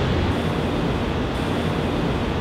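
Steady low background rumble of outdoor city noise, with no distinct events.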